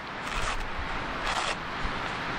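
Wind rushing and rumbling on the microphone, with fabric gaiters rustling twice as they are handled.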